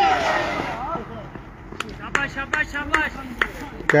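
Cricket players shouting during live play: a loud shout as the ball is bowled, then a quick run of short, sharp calls in the second half as a catch goes up and is dropped.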